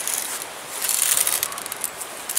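BB rifle being handled, a light mechanical rattling and clicking over a steady hiss.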